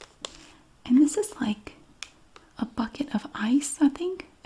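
A woman talking softly in a low, soft-spoken voice, with a few faint clicks from the plastic-packaged miniature magnet being handled in the quiet first second.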